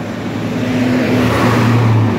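Large coach bus passing close by: a steady low engine hum with tyre and road noise that grows louder, loudest near the end as the bus draws level.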